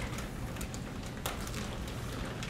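Irregular light ticks and taps, a few a second, over a steady low room hum.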